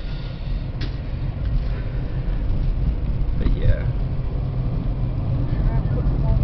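Car cabin noise while driving: a steady low rumble of engine and tyres on the road, with a brief vocal sound about three and a half seconds in.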